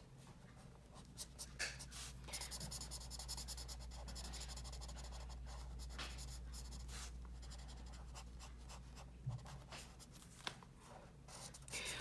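Yellow Crayola Super Tips felt-tip marker drawn over coloring-book paper in many quick short strokes as a sail is filled in; faint.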